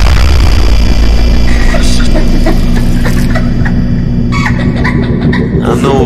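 Slowed-down electronic bass music: a deep, heavy bass drop comes in at the start and is held under a dense, distorted texture, with short vocal snippets in the second half.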